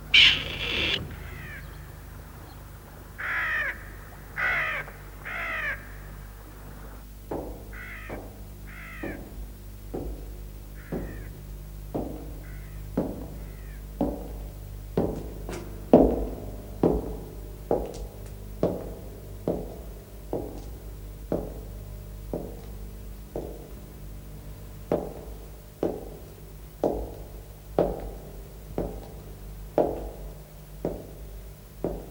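Crows cawing several times, loudest at the start and fading out by about twelve seconds in. From about seven seconds in, slow, steady footsteps on a stone floor, about one a second, echoing in a large hall.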